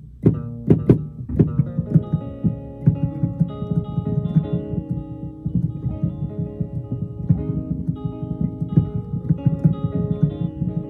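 Sampled hollow-body electric guitar played from a keyboard: quick plucked notes and chords in a steady rhythm over low bass notes.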